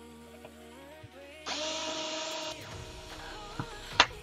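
Small pen-style cordless electric screwdriver running for about a second, a motor whine over a hiss, turning a tiny screw out of an aluminium beadlock wheel.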